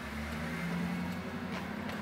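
Cabin noise of a Jaguar I-Pace electric car pulling away through a turn: a low steady hum with faint held tones above it.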